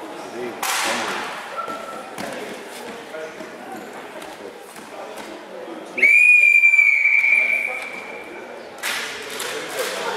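Referee's whistle blown in one long, steady blast lasting about two and a half seconds, starting sharply about six seconds in and stopping the wrestling action. Background voices run underneath, with a thump near the start.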